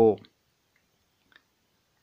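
A man's voice finishes one drawn-out word, then near silence: room tone with a single faint click about a second later.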